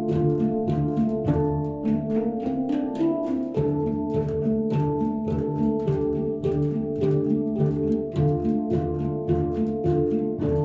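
A group of Opsilon steel handpans played together in a steady rhythm, about three or four strokes a second, each note ringing on between strikes.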